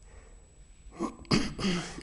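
A man's short, breathy vocal sound through a close lapel microphone, coming just past a second in after a quiet pause in his talk.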